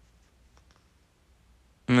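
Near silence with a few faint, short clicks about half a second in; a man starts speaking right at the end.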